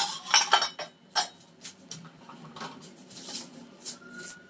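Steel kitchen utensils and containers clinking, a quick cluster of sharp clinks in the first second and one more a moment later, then softer clatter. Near the end, cumin seeds are tipped from a small steel bowl into hot oil in a frying pan.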